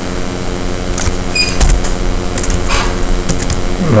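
A steady hum made up of several low, even tones, with a few faint clicks about a second in.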